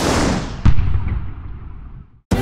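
Sound effect for an animated channel logo: a whoosh swelling up, then a deep boom hit about two-thirds of a second in, whose noisy tail fades away.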